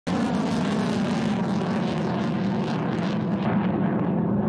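Rocket motor of a launched missile: a loud, steady rushing noise with a low hum underneath that starts abruptly, its highest hiss thinning out near the end.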